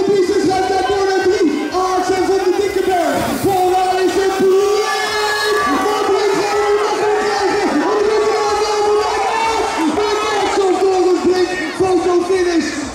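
Crowd of spectators shouting and cheering without a break through a BMX race, with a loud raised voice over the top, typical of a race announcer on the PA.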